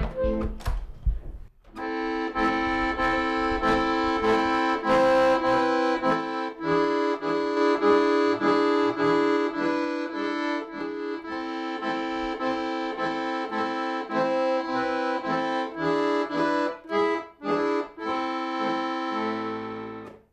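Piano accordion playing a tune: held chords on the treble keys over a steady pulse of bass notes, about two a second. A short chord opens it, then after a brief pause the playing runs on, with a few short breaks near the end.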